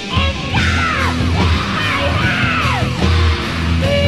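1980s Japanese heavy metal recording: full band with a steady low bass and drum bed, over which two high swooping sounds fall steeply in pitch, one about half a second in and another just past the two-second mark.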